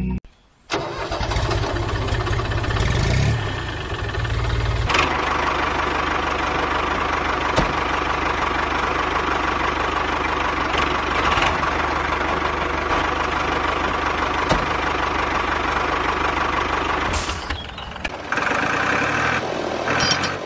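A tractor engine starting: after a brief silence, a heavy low rumble for a few seconds, then the engine settles into a steady run, which eases off near the end.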